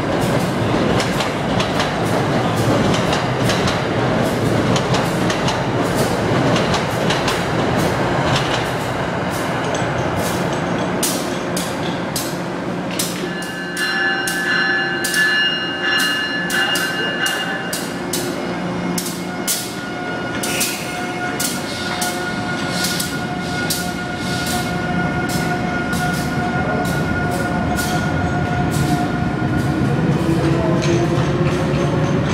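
Passenger trains rolling through a station platform: a dense running rumble, then from the middle on, rapid sharp clicks of wheels over rail joints along with steady high whining tones.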